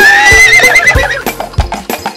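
A horse whinny, one call that rises and then wavers before fading after about a second, over music with a steady percussive beat.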